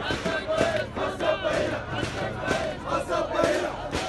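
Large crowd of protesters shouting and chanting slogans together, many voices at once, with sharp strikes repeating about twice a second.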